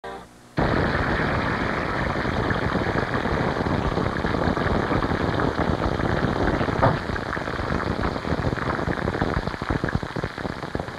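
Frying sizzle: a dense, steady crackling and popping, as of eggs frying in a hot pan, that starts abruptly about half a second in.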